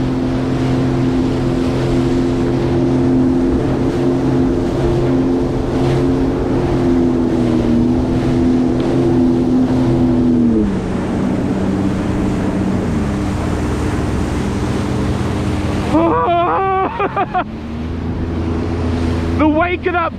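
2021 Sea-Doo GTX 170 personal watercraft's three-cylinder Rotax engine running steadily under way, with water rushing and hissing under the hull. The engine note drops twice, about ten and about thirteen seconds in, as the revs come down.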